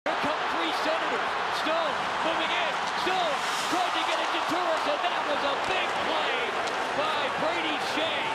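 Hockey arena game sound: a steady crowd roar with several sharp clacks of sticks and puck on the ice, and a voice over it.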